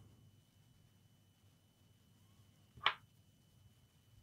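Near silence, broken once by a single short, sharp click a little under three seconds in.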